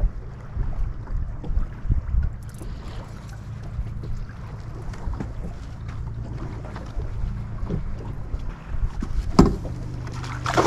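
Boat motor running steadily at trolling speed, with wind noise on the microphone. A sharp knock comes near the end.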